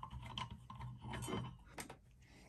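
Faint, scattered light clicks and knocks as hands take a timing degree wheel off a chainsaw's crankshaft, over a low steady hum.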